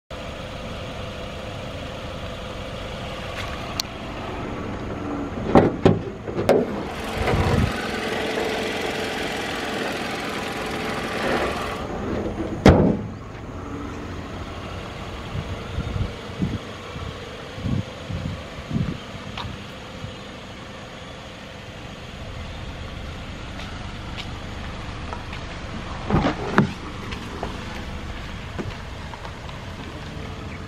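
Toyota Corolla Altis sedan with its engine idling steadily, under a scattering of sharp knocks and clicks. A cluster of knocks near the end comes as a car door is opened.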